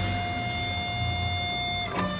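Sunburst Stratocaster-style electric guitar sounding one high note that rings on and slowly fades for nearly two seconds. The next note comes in at the very end.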